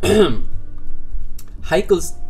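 A man's short vocal sound falling in pitch at the start and a brief utterance near the end, over soft background music with held tones.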